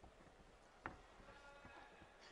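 Near silence: faint boxing-arena ambience with one sharp knock a little under a second in, then a brief faint pitched call like a distant shout.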